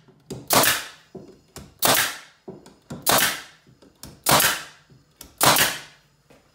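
Pneumatic nail gun firing five times, about one shot every 1.2 seconds, each a sharp shot that trails off quickly, driving nails into the wooden strips of a beehive bottom board.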